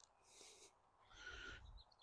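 Near silence, with one faint short bird call a little over a second in.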